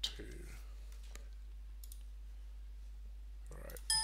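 Clicks from a computer keyboard and mouse, recorded close to the mic over a steady low electrical hum. There is one sharp click at the start and a couple of fainter clicks over the next two seconds.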